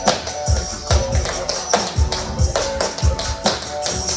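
Hip-hop track with deep, recurring bass hits, with tap shoes clicking on a laminate floor over it.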